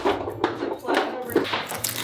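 Serrated bread knife sawing through the crisp crust of a sourdough loaf, the crust crackling and crunching in quick sharp clicks with each stroke.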